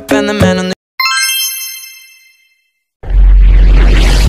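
A pop song with singing stops abruptly, then a bright chime sound effect rings out about a second in and fades away. Near the end a loud burst of noise with a deep rumble plays for just over a second and cuts off suddenly.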